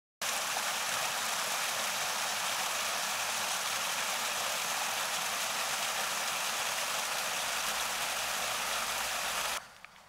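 Small waterfall tumbling down a mossy rock bank: a steady, even rush of falling and splashing water that starts suddenly and cuts off shortly before the end.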